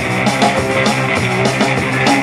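Live rock band playing an instrumental passage: electric guitars over a steady drum-kit beat.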